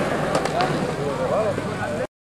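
Several young men's voices shouting and hollering with gliding pitch, over outdoor background noise, with two sharp clacks about half a second in.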